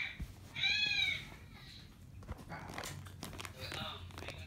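A young infant's single high-pitched vocal squeal about a second in, lasting about half a second and rising then falling in pitch, followed by fainter baby sounds.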